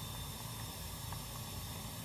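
Steady low hiss and rumble of background noise, with no distinct event.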